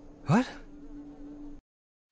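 A faint, steady buzzing hum, with a short rising voice saying "What?" about a third of a second in; everything cuts off to silence shortly before the end.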